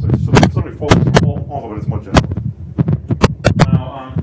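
An uneven series of about ten sharp knocks or thumps over a low hum, with a man's voice between them.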